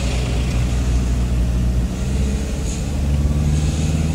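Car cabin noise while driving: a steady low engine and road hum, with a low tone that grows stronger about three seconds in.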